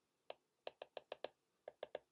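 Stylus tip clicking on a tablet's glass screen while writing by hand: a quick, irregular run of faint taps, bunched in two clusters.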